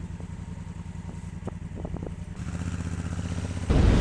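Motorcycle engine idling with a steady, even pulse, then picking up as the bike moves off. Near the end, wind noise on the helmet-mounted microphone rises sharply.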